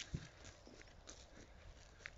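Faint soft thumps and rustling, with one louder thump just after the start.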